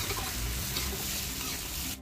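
A metal spatula stirring and scraping through fried tofu and fish pieces in a wok. The seasoned liquid underneath is hissing as it comes to the boil.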